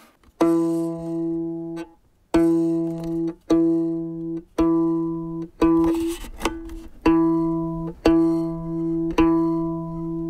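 Violin strings plucked pizzicato, about nine plucks, mostly the same low note, each ringing for about a second.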